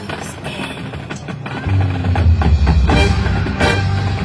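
Marching band playing, with the percussion section striking sharp hits throughout; about two-thirds of the way through a deep, sustained low sound comes in and the band gets louder.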